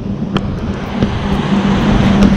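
Road traffic: a motor vehicle passing on the highway, a steady engine hum over tyre and road noise that grows louder toward the end.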